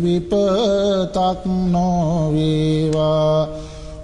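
A Buddhist monk chanting Sinhala verse solo (kavi bana), in a slow melodic voice that holds long notes with wavering turns. He breaks off briefly for breath near the end.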